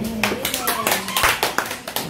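A small audience clapping, a quick, uneven run of claps that begins just after the start.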